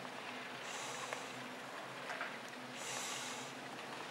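Breathing close to the microphone: hissy breaths about half a second long, roughly every two seconds, over a faint steady hum.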